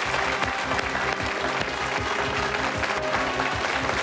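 Game-show music sting with held chords over a pulsing low beat, under a studio audience's applause.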